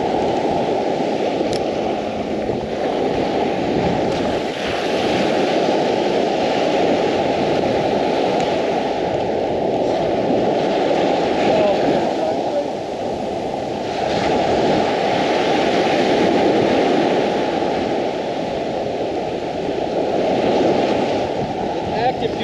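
Small Gulf surf breaking and washing up the sand, swelling every few seconds, with steady wind buffeting the microphone.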